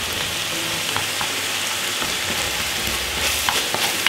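Minced beef with onion and spring onion sizzling steadily in a stainless steel frying pan. A spatula stirs it, with a few light scrapes against the pan.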